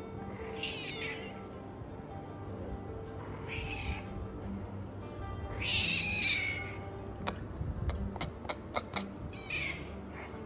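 A cat meowing: four short high-pitched meows, the longest and loudest about six seconds in. A few sharp clicks follow near the end.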